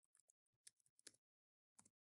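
Near silence broken by a handful of faint, short clicks from a computer keyboard and mouse button.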